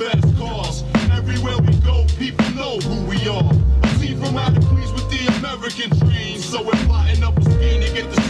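Hip hop music: a deep bass beat with rapped vocals over it.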